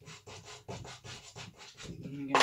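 Soft pastel stick scratching and rubbing across textured paper in a quick run of short strokes, several a second, as fur tufts are put in.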